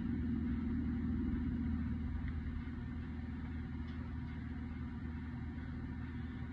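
Steady low hum of running machinery, with a few faint small clicks.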